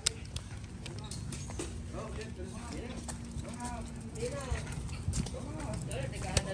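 Small dogs' claws clicking and tapping on stone paving slabs and tiled steps as they walk on leashes: quick, irregular ticks.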